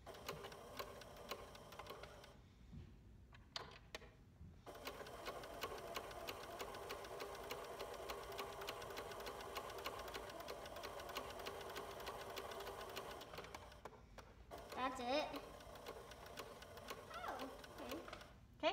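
Pfaff electronic sewing machine stitching: a few short runs of stitches with pauses in the first seconds, then one long steady run of rapid stitching for about nine seconds that stops a few seconds before the end.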